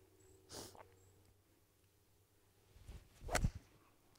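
A five iron striking a golf ball from the fairway: one sharp crack a little over three seconds in, after a near-quiet lead-in.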